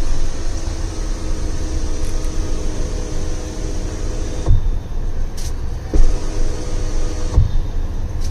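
Electric motor of the BYD Atto 3's panoramic sunroof running with a steady whir as the glass panel opens, stopping with a thump about four and a half seconds in. After a click, the motor runs again briefly and stops with another thump near the end.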